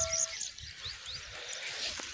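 The ringing tail of a bell 'ding' sound effect fades out in the first moment. After it comes faint outdoor ambience with a few short, high bird chirps and low rustling on the microphone.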